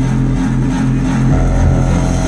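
Loud dubstep bass music over a concert sound system: a held, buzzing low synth bass note that drops into deeper bass about one and a half seconds in.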